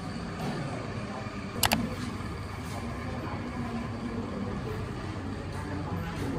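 Classroom room noise: a steady low hum with faint background voices, and a sharp double click about a second and a half in.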